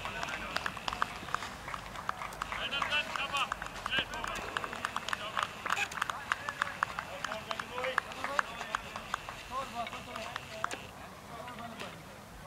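Indistinct outdoor chatter of voices around a cricket field, with many irregular sharp clicks and taps. A faint steady high tone comes and goes in the background.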